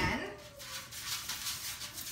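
Hand rubbing cooking oil across a metal sheet pan, a soft, rapid rubbing and swishing, after a short knock at the start as the oil bottle is set down on the counter.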